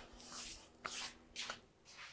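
Faint, short rustles and scuffs, about three of them, over a faint low steady hum that cuts off about one and a half seconds in.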